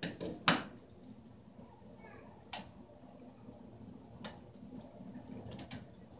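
A few sharp clicks and knocks from hands handling wires and plastic wire nuts in a metal electrical junction box, the loudest about half a second in and single ones spaced a second or two apart after it.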